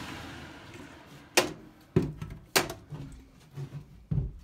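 Sheet-metal furnace access door being taken off and handled: a short scraping hiss, then three sharp knocks about half a second apart, and lighter taps near the end.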